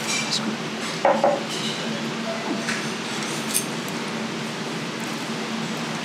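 Table ambience: a steady background hum with a few faint, short clinks of tableware about a third and about halfway through.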